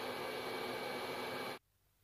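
Hair dryer blowing steadily, heating black adhesive vinyl film so it softens and sticks. The noise cuts off abruptly about one and a half seconds in.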